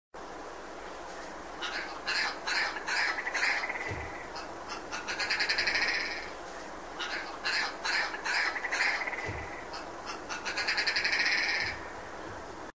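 Red grouse calling twice: each call is a series of hard, spaced notes that runs into a long rattling trill.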